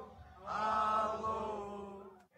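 A crowd of football supporters singing a terrace song together. After a short pause they hold one long, drawn-out note that begins about half a second in and fades near the end.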